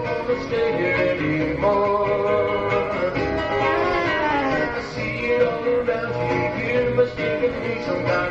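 Live band music led by electric guitar, from an old cassette recording with the treble cut off above about 8 kHz.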